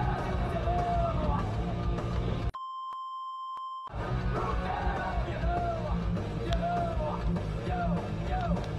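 Background music with a heavy beat, cut about two and a half seconds in by a censor bleep: a single steady high beep lasting about a second and a half that blanks out all other sound before the music returns.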